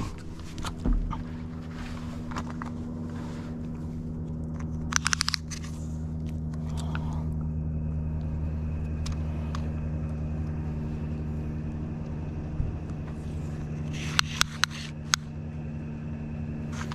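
A steady low engine hum that swells slightly in the middle, with a short rapid rattle about five seconds in and a few sharp clicks near the end.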